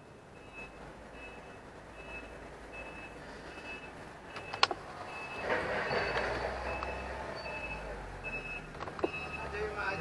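A forklift's warning beeper beeping evenly, a little under twice a second. The LPG forklift's engine grows louder from about the middle as it drives up and passes close by, with one sharp click about halfway through.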